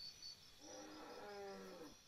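A person's voice holding one drawn-out vocal sound without words for a little over a second, starting about half a second in, its pitch sinking slightly at the end.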